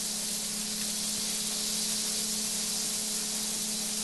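Giant ground-beef patty sizzling on an electric griddle: a steady frying hiss with a low hum underneath.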